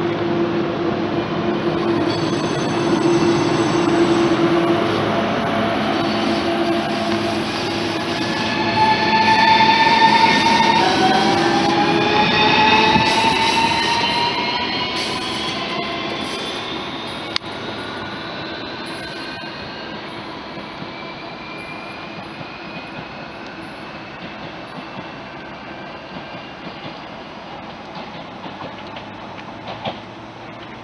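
Siemens Desiro RUS 'Lastochka' electric multiple unit pulling out of the station: a steady hum, then its traction drive whines in several rising tones as it accelerates past, loudest around ten to thirteen seconds in. The sound then fades steadily as the train draws away.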